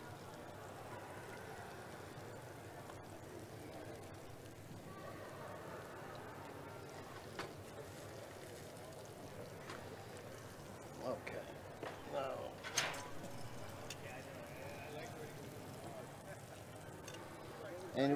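Low background murmur of distant voices, with faint speech about 11 to 13 seconds in. A few light clinks and knocks of plates and utensils are scattered through it.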